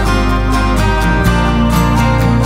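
Instrumental passage of a band song with no singing: guitar over held bass notes that change about a second in, with a steady drum beat.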